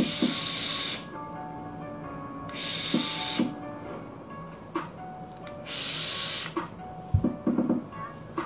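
Airy hissing of vaping on a box mod with a dripping atomizer: a few long draws and exhales of vapour, each lasting about a second, over background music. A knock near the end.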